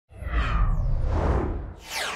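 Whoosh sound effects for an animated logo reveal: a long rumbling whoosh, then a second swoosh near the end that falls quickly in pitch.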